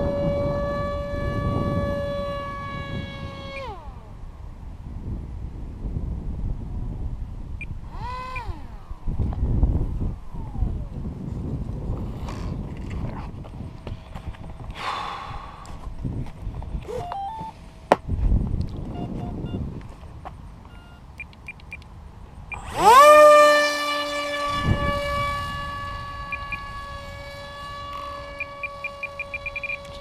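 Electric motor and propeller of a foam RC park jet whining at a steady pitch, throttled back about four seconds in. A stretch of low wind rumble on the microphone follows, then near the end the motor spools up sharply, loudest at the spool-up, and holds a steady whine.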